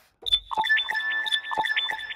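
Sylenth1 software synthesizer playing an arpeggiated patch with only its part B soloed, with the distortion switched off. It gives high, bell-like synth notes in a quick repeating arpeggio over held high tones, with no low end, starting about a quarter second in.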